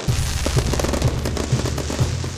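Fireworks crackling and popping in rapid succession, mixed with music that holds a steady low bass note.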